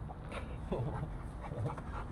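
Large dog panting, a few soft breaths.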